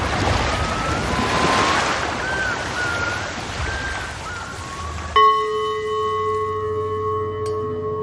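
Film soundtrack: surf washing onto a shore, with a few faint short gliding whistles over it. About five seconds in, a sudden struck bell-like tone starts and keeps ringing steadily.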